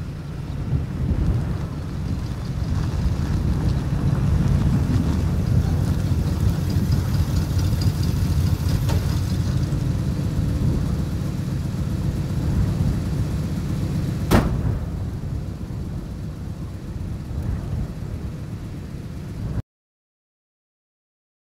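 An old pickup truck drives up and comes to a stop, its engine and tyres a low rumble that swells over the first few seconds, then eases. A single sharp click comes about 14 seconds in, and the sound cuts off abruptly just before the end.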